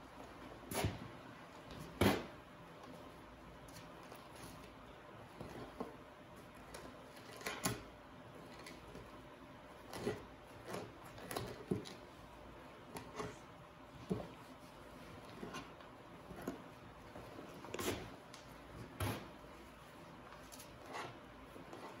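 Two-handled fleshing knife scraping membrane off the leather side of a lynx pelt on a wooden fleshing beam: irregular short scraping strokes, a dozen or more, the loudest about two seconds in.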